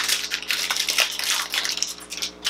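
Irregular crinkling and rustling of packaging being handled, with small clicks and taps, as a two-piece makeup brush set is taken out.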